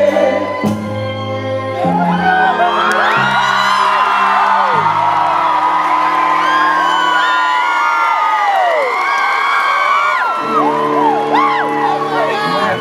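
A live band's held closing chords ring out while a concert crowd cheers, whoops and whistles over them. The held notes die away about two-thirds of the way through as the cheering carries on, and a new sustained chord starts near the end.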